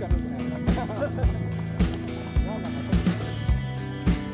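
Background music with a steady drum beat, about two beats a second, over held bass and chord notes.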